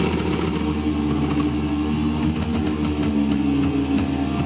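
Live rock band playing: distorted electric guitars holding sustained chords. From about halfway, a run of sharp, closely spaced ticks comes in, like cymbal or hi-hat strokes.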